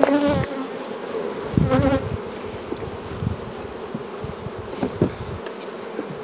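Honey bees buzzing steadily around hives opened to pull honey supers, with a few low bumps of hive equipment being handled.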